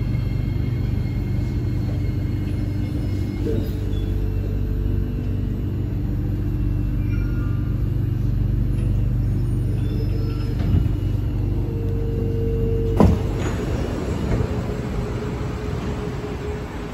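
Steady low rumble and hum of a C751B MRT train standing at a station platform, with several held tones over it. A sharp knock comes about 13 seconds in.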